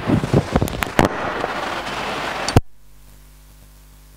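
Noisy classroom commotion with many sharp knocks and clatters. It cuts off suddenly about two and a half seconds in, leaving only a faint steady electrical hum.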